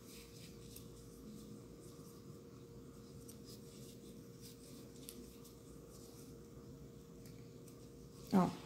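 Faint scratching and light ticks of a crochet hook drawing cotton string through stitches, over a faint steady hum.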